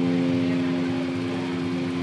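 A single electric guitar note ringing out through the amplifier, held steady and slowly fading.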